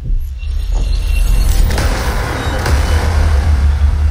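Playback of a layered sound-design mix: a strong, steady deep rumble under a dense, muffled noise bed made from a low-pass-filtered city street recording standing in for crowd noise.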